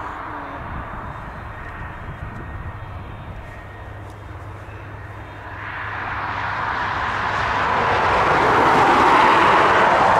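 Airbus A330-300 airliner's jet engines on the runway. They run low and steady at first, then from about halfway through swell into a loud rushing roar.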